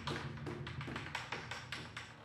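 Tail of a show's intro theme music: a run of quick, even percussive taps over a low held tone, fading away toward the end.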